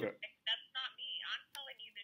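A woman talking on the other end of a phone call, heard faintly and thin through the handset's earpiece.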